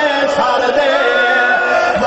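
Voices chanting a slow, mournful lament with long held notes, in the style of a Shia noha or marsiya.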